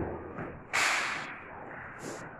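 A sharp swishing rustle of clothing about three-quarters of a second in, fading over about half a second, over a faint steady hiss.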